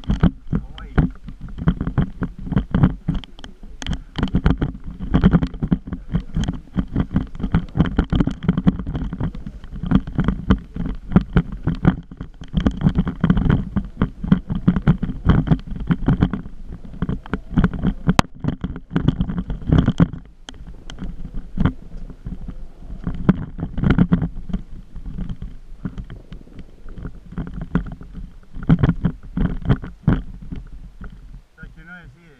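Movement noise from a camera carried along a rough dirt trail: dense, irregular knocks and rattles over a low rumble, with a faint high tone that comes and goes.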